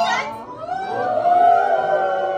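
Mock-operatic singing. A held, wavering high note ends with an upward swoop at the very start. About half a second later another long sung note starts and is held, with more than one voice joining.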